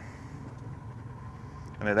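Steady low mechanical hum of a boat's motor idling.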